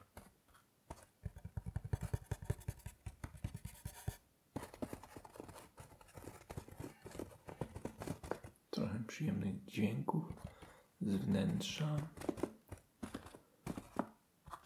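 Fingertips scratching, rubbing and tapping over turned wooden chess pieces and the felt lining of their box. The sound is a dense run of small clicks and scratches, heaviest near the end.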